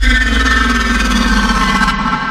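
A heavy tanker truck's engine running loudly at close range, with a deep rumble. It cuts in abruptly, holds steady, then begins to fade near the end.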